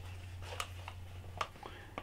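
A few faint, light clicks and taps from a small box being handled and turned over in the hands, over a steady low hum.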